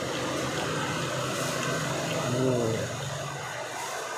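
A steady low hum that fades out about three seconds in, with a short murmured "mmm" from a person chewing food a little past two seconds.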